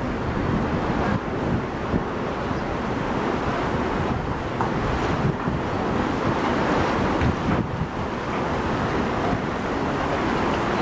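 Wind buffeting the microphone: a steady rushing noise with an irregular low flutter.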